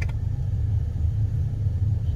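Steady low rumble inside a car's cabin: the drone of the car's running engine and road noise, with no change through the pause.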